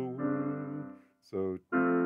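Keyboard playing piano-sound chords: low notes fade out about a second in, and a new F major chord is struck near the end.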